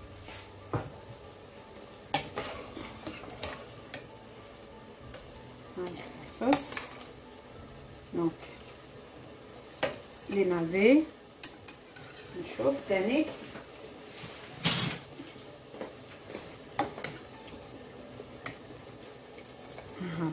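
Metal ladle and utensils stirring in a stainless steel pot of simmering broth, with scattered sharp clinks of metal against the pot's rim and sides.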